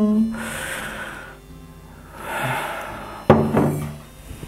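Whisky poured from a glass bottle into a tasting glass in two short pours, then the bottle set down on the wooden table with a sharp knock a little after three seconds in.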